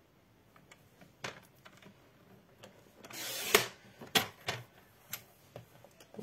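Sliding-blade paper trimmer cutting a strip of cardstock: the blade runs down its track in a short scrape of about half a second that ends in a sharp click. Several lighter clicks and taps of the paper and trimmer being handled come before and after.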